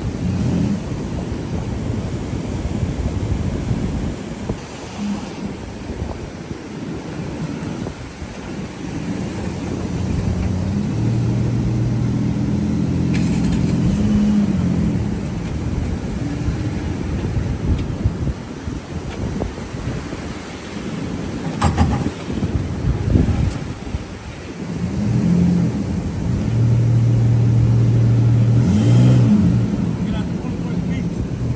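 Pickup engines revving under load in soft sand during a kinetic-rope recovery pull, a Jeep Gladiator towing a stuck Ford Ranger. The revs are held high twice, about ten seconds in and again near the end, with a few short knocks in between.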